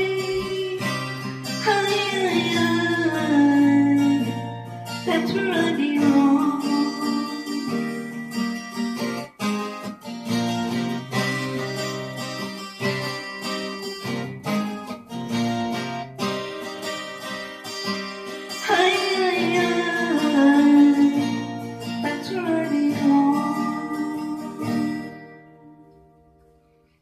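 Acoustic guitar strummed and picked at a steady pace, with singing at times, the last chord fading out near the end.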